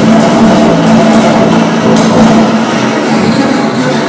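Two acoustic double basses playing a duet: one bowed, holding low sustained notes, while sharp percussive clicks from the strings and wood sound every so often among them.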